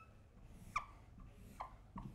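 Dry-erase marker squeaking on a whiteboard as lines are drawn: a few short, faint squeaks, the clearest about three quarters of a second in and two more in the second half.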